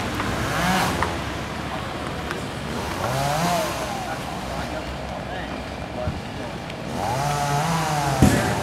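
A chainsaw revving three times, each rev rising and falling in pitch, over a steady background noise.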